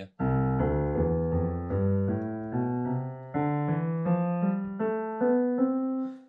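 Roland FP30 digital piano playing a slow scale, one clear step after another at an even pace, with the last note held near the end.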